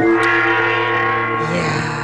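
A short radio jingle: a struck, gong-like chord hits at the start and is held, ringing for about two seconds.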